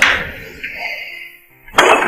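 A wooden room door pulled shut, closing with a loud knock near the end, after a softer knock at the start as it swings.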